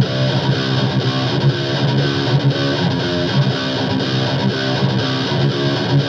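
Recorded high-gain distorted rhythm guitar from a BC Rich Bich, two tracks through EZmix 2 5150 amp presets, playing a fast chugging metal riff. The tone is bright, with a harsh high end.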